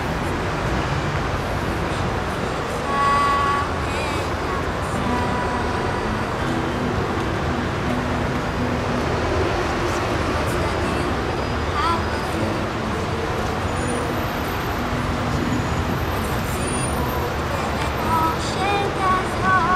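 Steady road traffic noise, with an acoustic guitar played faintly beneath it.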